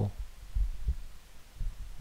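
A few soft, low thumps, the strongest a little over half a second in.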